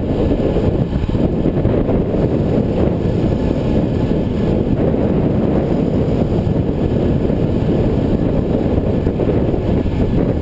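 Steady low wind rush buffeting the microphone of a camera on a bicycle moving at about 26 mph, with tyre noise on the pavement underneath.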